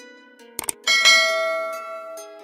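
Subscribe-animation sound effects: a quick double mouse click about half a second in, then a bright notification-bell ding that rings out and fades.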